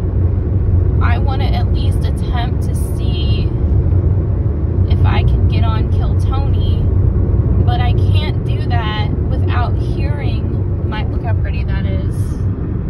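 Cabin road noise in a moving Hyundai car at highway speed: a steady low rumble of tyres and engine. A person's voice comes and goes over it.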